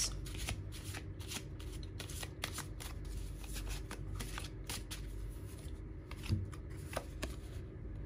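A deck of tarot cards being shuffled by hand: a quick, soft run of card flicks and slaps that thins out in the last few seconds.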